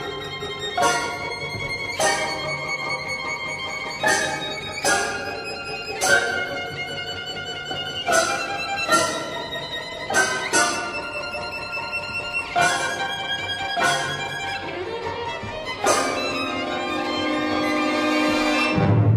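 Solo violin playing a passage of sharply accented notes, with ringing tones between them. Near the end the orchestral accompaniment swells in.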